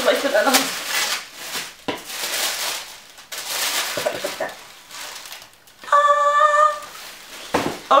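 Paper wrapping rustling and crinkling as it is lifted out of a cardboard box, with a short held vocal note, about a second long, about six seconds in.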